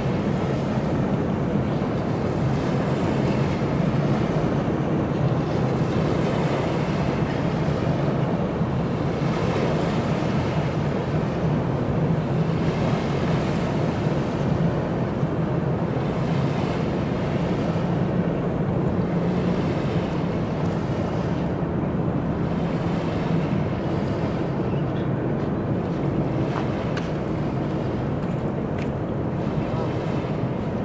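Wind buffeting the microphone and small waves lapping on a gravel shore, over a constant low rumble.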